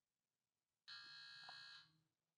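Trivia game buzzer sounding once: a faint, steady electronic buzz lasting about a second, starting about a second in.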